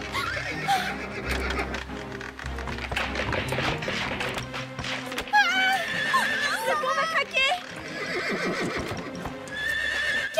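Cartoon horses whinnying over background music: a long, shaking whinny about five seconds in, and another near the end.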